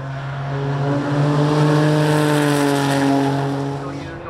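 Toyota GR Yaris's turbocharged 1.6-litre three-cylinder engine held at high revs as the car drives through a corner on a race circuit. It grows louder as the car nears, is loudest about halfway through, then eases slightly.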